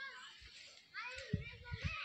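Children's high voices calling out, with a few low thumps about a second and a half in.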